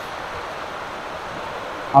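Steady, even outdoor background hiss with no distinct events.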